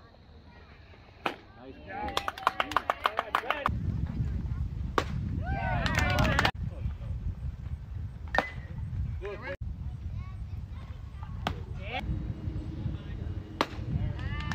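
Youth baseball game: several sharp single pops a few seconds apart, pitches smacking into the catcher's mitt, with shouting voices from the field around some of them and a steady low rumble.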